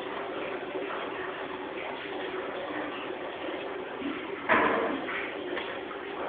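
Steady noisy background with one sudden loud knock about four and a half seconds in, lasting about half a second.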